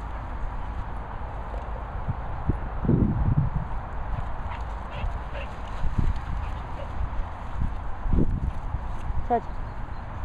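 Wind and handling rumble on a handheld phone microphone while walking over grass, with a few short, low sounds, the loudest about three seconds in and again about eight seconds in.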